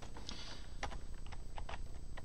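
Typing on a computer keyboard: a run of irregular key clicks.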